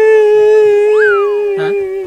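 One long, steady, loud held note, with a quick whistle-like glide up and back down about a second in, cutting off just at the end: an added comic sound effect.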